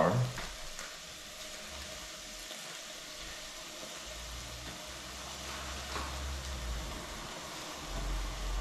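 Food sizzling steadily in fat in a saucepan on an electric hotplate, with a low hum coming in about halfway through.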